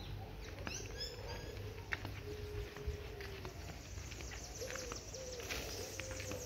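Outdoor birds calling at low level: a quick falling run of high chirps about a second in, and low, drawn-out calls twice later on.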